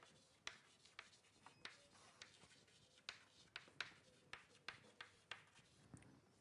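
Faint writing on a board: a string of short, irregular strokes and taps, about two or three a second.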